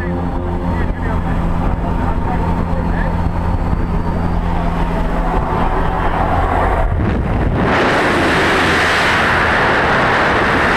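Propeller aircraft's engines droning steadily, heard inside the cabin. About seven and a half seconds in, the jump door is open and a loud rush of wind and propeller noise takes over.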